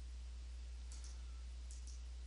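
A few faint computer mouse clicks near the end, over a steady low hum.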